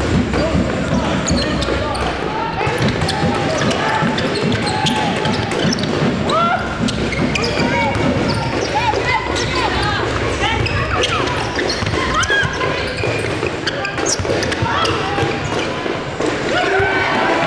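Game sound from an indoor basketball match: a ball bouncing on the wooden court amid players and spectators calling out, echoing in a large hall.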